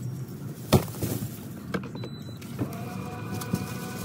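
A few knocks as bags are set into the car's cargo area, the loudest about a second in. Then a power liftgate's electric motor hums steadily as the hatch closes.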